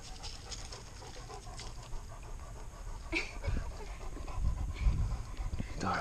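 A dog panting, louder in the second half.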